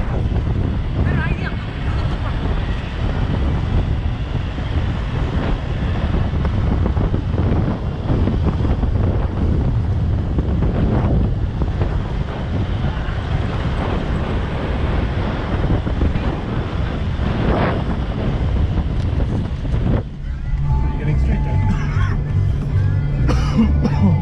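Wind buffeting the microphone of a camera mounted outside a 4x4 driving over desert sand, over the rumble of the engine and tyres. About 20 s in the sound changes to inside the cabin: a steady low engine drone with music and voices over it.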